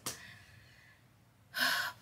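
A woman's short, sharp in-breath, a gasp about one and a half seconds in, taken just before she speaks again.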